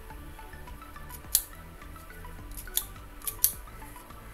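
Hand-held single-hole paper punch snapping shut through a hibiscus leaf to cut leaf discs: a few sharp metallic clicks, one about a second in and a quick cluster near the end.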